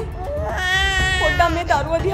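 A baby crying: one long, steady wail starting about half a second in and lasting about a second, then shorter broken cries near the end.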